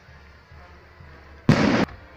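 A festival skyrocket (cohete) going off with a single sharp bang about one and a half seconds in. The bang cuts off suddenly.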